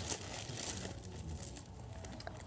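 Faint crinkling and rustling handling sounds, low and brief, in a quiet room.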